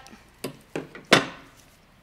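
A few light woody clicks, then one sharp snap about a second in, from curly willow branches being handled and worked into a flower arrangement.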